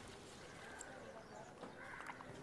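Very quiet soundtrack: faint background hiss with a few soft ticks.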